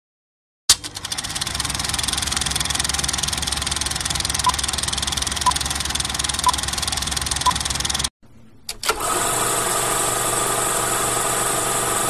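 Sound effect of a film projector: a click, then a steady clatter of the projector running, with four short beeps a second apart marking the film countdown leader. After a brief cut near the end, a different steady buzzing sound starts.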